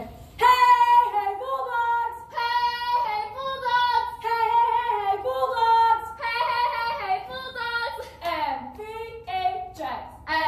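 A young woman's voice chanting a cheer in a high-pitched, sing-song voice, in held notes with short breaks between them.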